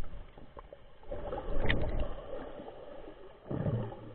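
Muffled underwater noise from a submerged camera: low surges of moving water, loudest from about one to two seconds in and again near the end.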